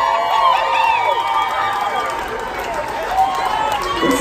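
Concert audience cheering and whooping for a song that has just ended, many voices shouting and yelling over one another.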